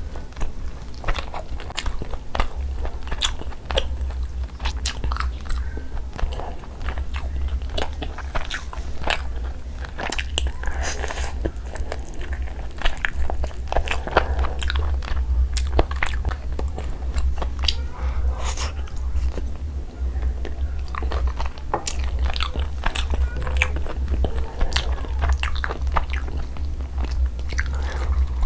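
Close-miked chewing and biting of tandoori roast chicken, with a run of short wet mouth clicks and crunches, over a steady low hum.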